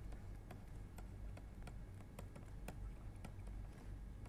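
Faint, irregular small taps and clicks of a stylus on a tablet screen while handwriting is written, over a low steady hum.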